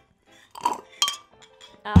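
Sipping water through a straw from a glass, with a sharp glass clink about a second in.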